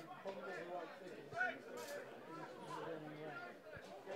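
Faint distant voices: scattered calls and chatter from players and spectators at an outdoor football match.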